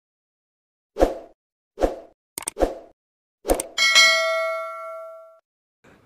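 Intro sound effect: a run of short, sharp hits, about five of them spaced unevenly, followed by a bright bell-like ding of several tones that rings and fades over about a second and a half.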